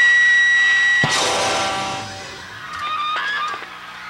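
Live rock band with distorted electric guitars and drum kit finishing a song: a held chord ends in a final crash about a second in that rings out and fades. A few short calls follow near the end.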